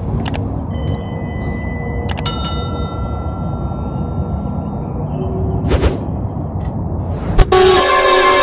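Steady low rumble of city traffic. About two seconds in, a click and a ringing bell chime that fades over about two seconds, from a subscribe-button animation. Music starts near the end.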